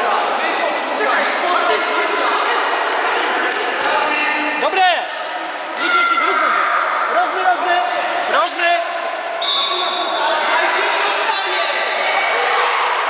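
Sports-hall din during a children's futsal match: many voices shouting and calling at once, echoing in the large hall, with the thuds of the ball being kicked and bouncing on the floor.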